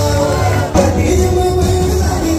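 Live band music with a singer, played loud over a hall's sound system; the music dips for an instant about three-quarters of a second in, then comes back in with a hit.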